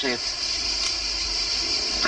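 A man's voice ends a word, then a pause holding only the steady hiss and low hum of an old film soundtrack.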